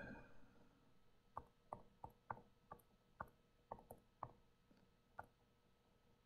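About ten light, sharp taps at an irregular pace of two or three a second while a subtraction is keyed into a TI-89 graphing calculator, the last one alone near the end.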